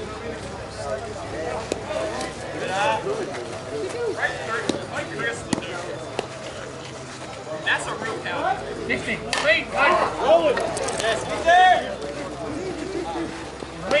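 Slowpitch softball bat cracking sharply against the ball about nine seconds in, amid players' shouting and chatter that gets louder right after the hit.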